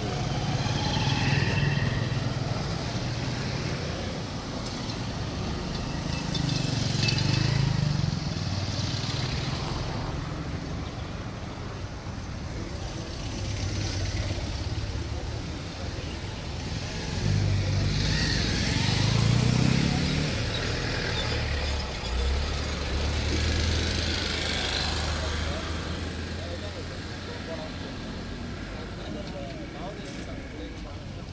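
Road traffic passing: motor scooter and truck engines running, with one engine rising in pitch as it speeds up about eighteen seconds in.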